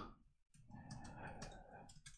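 Faint computer keyboard keystrokes: a few soft clicks starting a little under a second in, during otherwise near silence.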